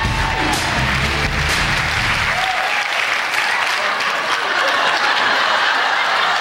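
Studio audience applauding, with music playing under it for the first couple of seconds and then stopping.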